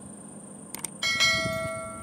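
Two quick mouse clicks, then a bright bell chime that rings on and slowly fades: the stock sound effect of a YouTube subscribe-button and notification-bell animation.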